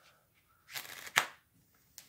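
Deck of Bicycle AutoBike No. 1 playing cards riffle-shuffled on a cloth close-up mat: a short riffle of cards about two-thirds of a second in, ending with one sharp snap.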